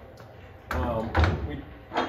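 Metal barrel canisters of an HZ-40 centrifugal barrel finishing machine clunking as they are handled out of the machine, with thuds after about a second and a sharp knock near the end.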